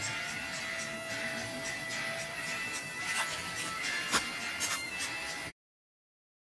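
Quiet background music with a few long held notes and some faint clicks; the sound cuts out to silence just before the end.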